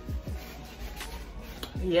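Quiet background music with deep bass drum hits that drop in pitch. A woman says a brief "yes" at the very end.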